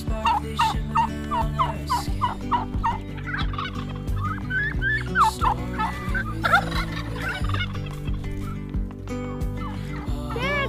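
Domestic turkeys calling repeatedly while being chased and herded, a rapid series of short calls, a few each second.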